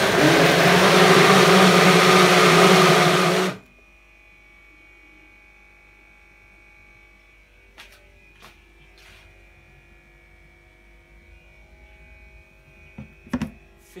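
Single-serve bottle-type blender running loudly for about three and a half seconds, then switched off. Afterwards only a faint steady hum with a few light clicks and knocks.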